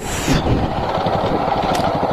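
Motorcycle running along a dirt road, its engine noise mixed with steady wind and road noise on the bike-mounted microphone, with a brief hiss at the very start.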